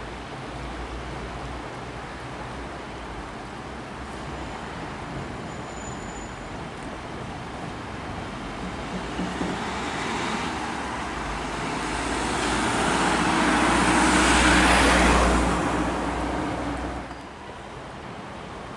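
A road vehicle passing on the adjacent road: tyre and engine noise swelling over several seconds to a peak about fifteen seconds in, then dropping away near the end, over steady traffic noise.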